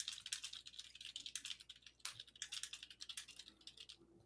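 Computer keyboard being typed on: a quick, irregular run of faint key clicks, with a short pause about two seconds in.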